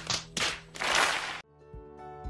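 A few loud noisy bursts from an inserted film clip that cut off suddenly about one and a half seconds in, after which soft background music begins.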